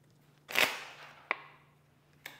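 Tarot cards being handled: a short swish of a card sliding about half a second in, then a single sharp tap of a card laid down a little past the middle, over a faint steady hum.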